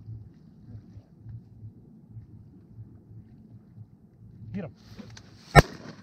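A single shotgun shot near the end, sharp and much the loudest sound, after a few seconds of faint low background noise. A short rising call is heard about a second before the shot.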